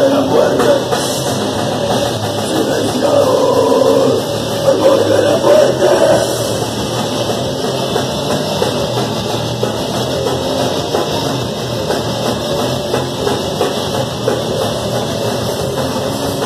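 Crust punk band playing live and loud: distorted electric guitar, bass and drum kit pounding along steadily.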